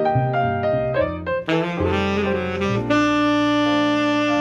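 Tenor saxophone playing a jazz line over piano and upright bass: a run of short notes, a quick flurry about halfway through, then one long held note near the end.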